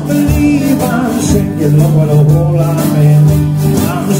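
A jug band playing a blues number live: acoustic guitar and mandolin strumming over held low bass notes, with a steady percussion beat from the washboard.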